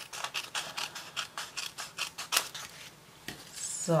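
Small scissors snipping through a paper coffee filter in a quick run of short cuts, trimming off its crimped edge. The snipping stops about two and a half seconds in.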